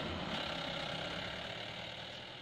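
A vehicle engine running steadily and faintly, slowly fading.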